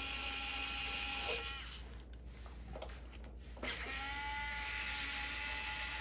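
Small pen-style electric screwdriver running with a steady high whine, backing out the screws that hold the RC truck's hard body on. It stops after about a second and a half and starts again about two seconds later, with a few faint clicks in the pause.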